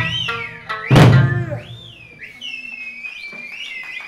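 Eisa drumming: a heavy strike on a large barrel drum (ōdaiko) about a second in, followed by high finger whistles (yubibue) gliding up and down as the drumming falls quieter.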